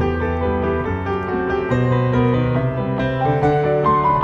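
Solo piano played with both hands in free improvisation: held chords and a melody over bass notes that change every second or so.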